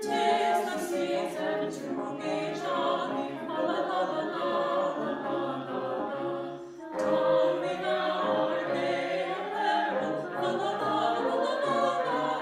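Mixed choir singing a sustained, harmonised piece, with brass and woodwinds accompanying. There is a short break between phrases about seven seconds in.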